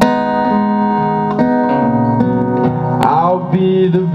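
Live solo acoustic guitar song: a man's voice holding long sung notes over strummed acoustic guitar, with a sharp strum about three seconds in.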